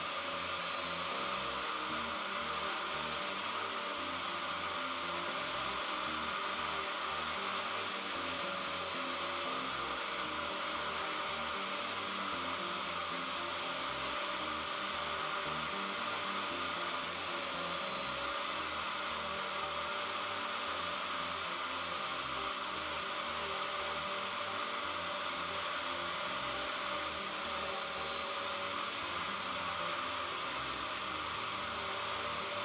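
Portable carpet and upholstery spot-cleaner extractor (Bissell SpotClean) running steadily with a high motor whine, its clear hand-tool nozzle sucking wet cleaning solution back out of cloth seat upholstery.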